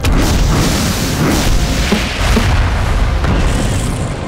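Sound-effect explosions from fiery combustion-bending blasts, a continuous barrage of booms with a heavy low rumble, starting suddenly just after the start, over a dramatic music score.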